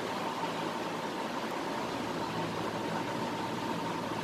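Steady background hiss with a faint steady hum, unchanging throughout.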